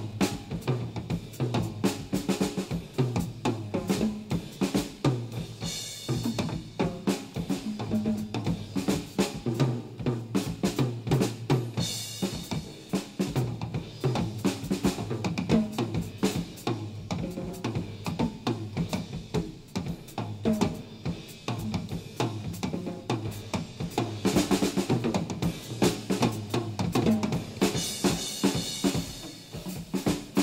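Recorded jazz with a drum kit to the fore, playing a busy, continuous passage on snare, bass drum and toms over low pitched notes. Washes of cymbal come in about six, twelve, twenty-five and twenty-eight seconds in.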